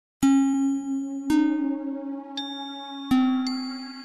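Bell-like chime struck about five times. Each strike rings on a steady pitch and fades slowly. The same low note recurs, with lighter, higher pings between.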